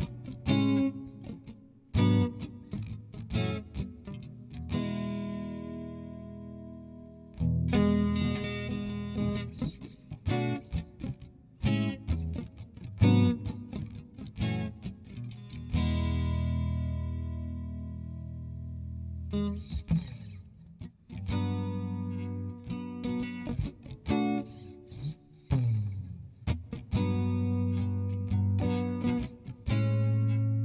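Electric blues guitar playing the bridge of a recorded track: picked single notes and chords, some left to ring and fade over a few seconds.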